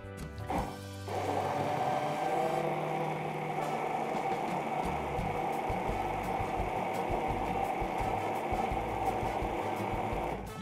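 Red hand-held immersion blender running in a tall plastic beaker, puréeing mixed red berries. It starts about a second in and runs at a steady pitch.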